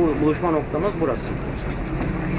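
Double-decker bus on the move, heard from inside: a steady low engine and road rumble, with indistinct voices talking over it during the first second or so.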